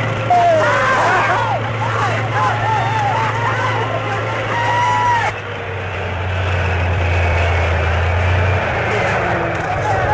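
A tank's engine running in a steady low drone, with wavering high-pitched squeals over it for about the first five seconds.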